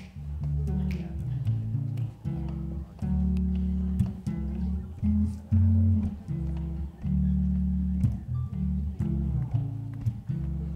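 Electric bass guitar playing a bass line on its own: low plucked notes of varying length, changing pitch every half second or so, with short breaks between phrases.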